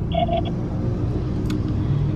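Steady low rumble of a car idling, heard from inside the cabin, with a short double tone near the start and a single click about a second and a half in.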